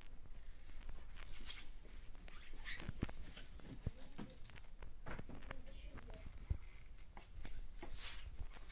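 Framed pictures and canvases being handled and shifted: a few short dull knocks and some rustling.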